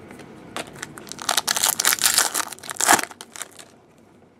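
Foil wrapper of a 2013-14 Select Hockey card pack crinkling and tearing as it is ripped open by hand. A dense run of crackles starts about half a second in, is loudest in the middle, and stops shortly before the end.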